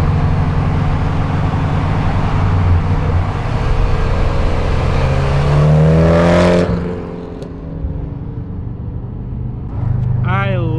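A Mitsubishi Lancer Evolution X's turbocharged four-cylinder, fitted with an aftermarket exhaust and test pipe, running loud alongside an open car window with heavy wind rush. The engine note rises as it accelerates away, and the loud noise cuts off suddenly about two-thirds of the way through, leaving a quieter engine hum.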